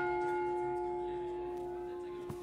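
A single bell tone ringing on and slowly dying away after being struck: one steady low note with a few higher overtones, and no new strike.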